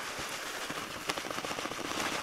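Small fishing pellets pouring from a bag onto dry groundbait in a plastic bucket: a steady, dense run of fine little ticks.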